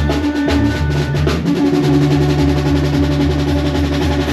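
Live regional Mexican band music playing instrumentally: a pulsing bass line under held middle notes, with drums and percussion keeping a steady beat, heard loud through the stage sound system.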